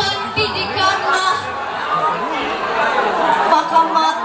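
A girl's voice reciting poetry in Indonesian into a microphone, with crowd chatter in the background.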